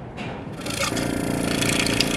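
The open-domed compressor of a General Electric CG ball-top refrigerator switching on about half a second in and coming up to a steady running hum. It starts unloaded: a spring-loaded hydraulic unloader piston holds the suction reed open, so there is no compression until oil pressure builds.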